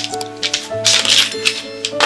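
Plastic marker pens clicking and clattering against each other as a hand gathers them up, a few sharp clicks with a busier cluster about a second in, over steady background music.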